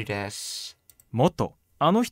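Mostly speech: a voice speaking Japanese, with a short click a little under a second in as the flashcard's answer side is revealed.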